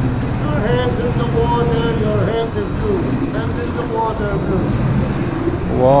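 A small tour boat's engine runs steadily at a low pitch, with people's voices over it.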